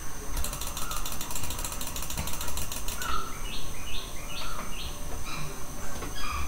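A mouse scroll wheel clicking in a fast, even run for about two and a half seconds. After that a bird chirps, a string of short rising calls about two a second.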